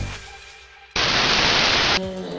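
Background music fading out, then about a second in a burst of TV-style static hiss that starts and stops abruptly, used as an edit transition to the next scene.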